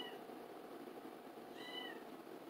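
A house cat meowing twice, faintly, with short calls about one and a half seconds apart.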